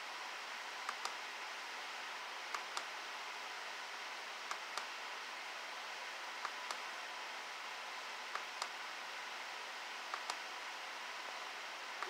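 Steady faint hiss with pairs of light clicks about every two seconds.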